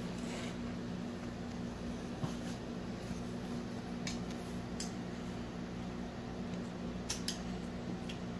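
Metal spoon clinking and scraping against a ceramic plate during eating: a few light clinks, two close together near the end. A steady low hum runs underneath.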